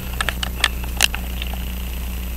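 Video camera's zoom motor whining steadily as the lens zooms out, over a low steady hum, with a few light sharp clicks in the first second.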